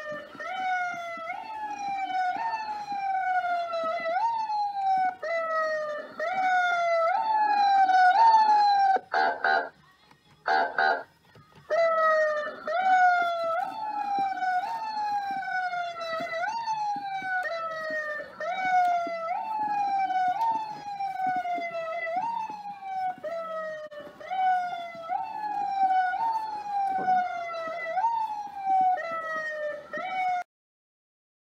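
Electronic police siren of a children's ride-on police car, a repeating wail that rises sharply and falls slowly about once a second. It breaks off about nine seconds in, with two short different blips, then starts again and runs on.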